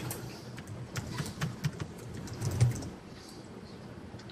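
Irregular clicks and taps of typing and clicking on a laptop keyboard, with a few soft low thumps; the clicking thins out after about three seconds.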